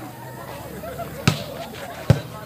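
A volleyball struck hard by hand, a single sharp smack about a second in: the serve being hit. Faint crowd voices underneath.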